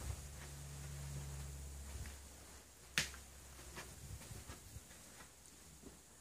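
A single sharp click about three seconds in, followed by a few fainter clicks and taps, over a low hum that fades out about two seconds in.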